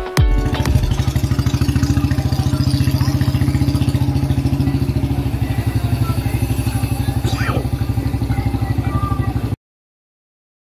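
An engine running steadily with a fast, even pulse. The sound cuts off suddenly just before the end.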